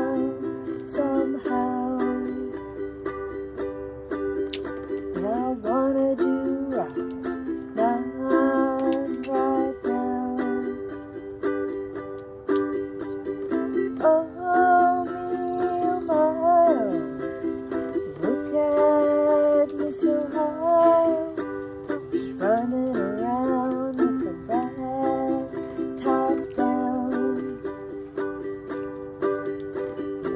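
Ukulele strummed in steady chords, with a voice carrying a wordless melody over it at times.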